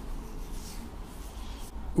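Soft rubbing and rustling of hands against skin and clothing as they move, over a steady low room hum.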